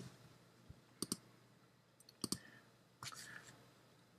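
Computer mouse button clicking: quick pairs of sharp clicks, about a second in and again a little after two seconds, with a fainter pair near three seconds.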